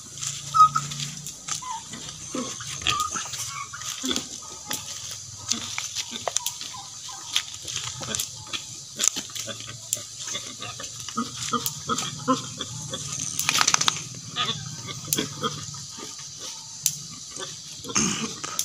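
Native pigs grunting in short, scattered calls among clicks and knocks, with a brief rushing noise about three-quarters of the way through.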